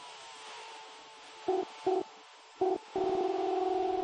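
Electronic synthesizer outro after the full band has stopped. Three short synth notes sound over a faint hiss, then a held synth note with a fast flutter comes in about three seconds in.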